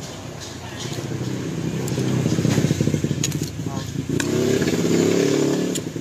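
A motorcycle engine passing close by, growing louder over the first few seconds and then fading away near the end.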